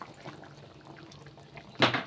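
Tapioca starch slurry poured from a bowl into a wok of simmering sauce to thicken it, a soft liquid pour, then one sharp knock near the end.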